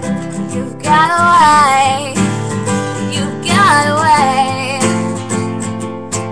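Acoustic guitar strummed in a steady chord pattern, with a woman's voice singing two long, wavering held notes over it, about a second in and again midway.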